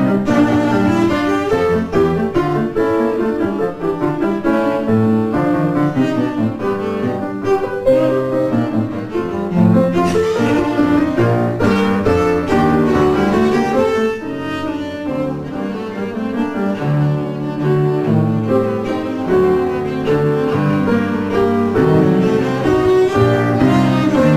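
Cello and piano playing together, the cello carrying a quick, busy line of bowed notes over the piano accompaniment, at a steady level with a slight drop about halfway through.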